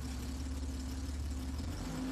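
BMW engine with Bosch K-Jetronic continuous fuel injection idling steadily.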